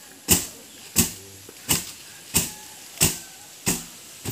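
A heavy wooden post rammed end-down into the ground over and over to tamp the soil, six strikes in an even rhythm a little under a second apart.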